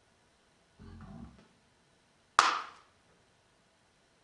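Two dyed hard-boiled eggs struck together once in an egg fight: a single sharp shell-on-shell knock about two and a half seconds in. It comes after a faint low sound about a second in.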